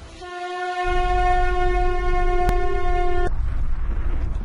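News-intro sound effect: a loud, steady horn-like blast held at one pitch for about three seconds over a deep low rumble, with one sharp click near the end of the blast. The horn cuts off suddenly while the rumble carries on.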